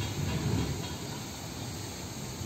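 Low, steady rumble of two EMD GP38-2 diesel locomotives approaching from a distance, under a constant hiss.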